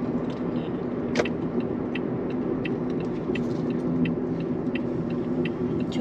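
Inside a moving car: steady engine and tyre hum from driving on a paved road, with light ticks about three times a second and one sharper click about a second in.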